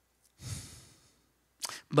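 A man's sighing exhale into a close handheld microphone, about half a second in: one short breathy rush that fades out within about half a second.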